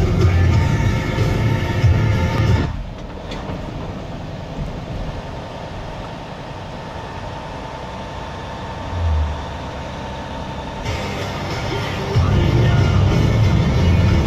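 Music that drops away about three seconds in, leaving several seconds of quieter, steady rumbling noise with a brief low thump, before loud music starts again near the end.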